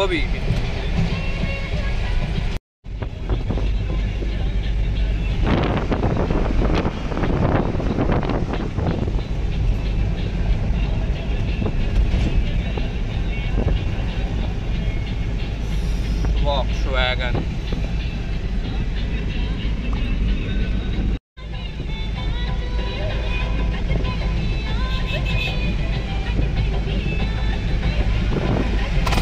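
Engine and road rumble heard from inside the cab of a moving Mahindra Bolero pickup, steady throughout, broken by two brief cuts to silence: one about three seconds in, another about twenty-one seconds in.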